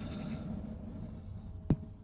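Steady low background rumble with a faint hum, broken by one sharp click or knock near the end.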